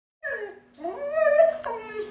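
German Shorthaired Pointer whining in three drawn-out calls that bend in pitch: a short falling one, a longer rising one, then another falling one. It is asking for something on the kitchen counter.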